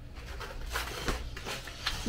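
Faint rustling and light knocks of stiff cardstock being handled, over a low steady room hum.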